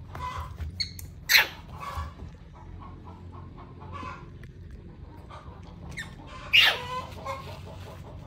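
A few short, sharp animal calls, the loudest about a second in and another at about six and a half seconds.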